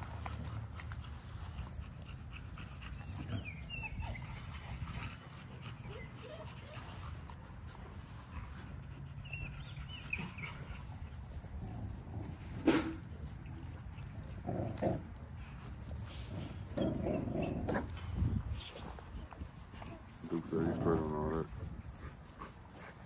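XL American Bully puppies growling and grunting as they play-fight and tug at each other, with one sharp knock about thirteen seconds in.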